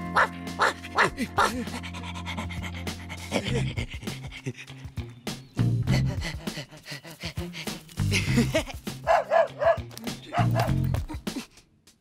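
Cartoon background music, with a cartoon dog panting in short bursts over it.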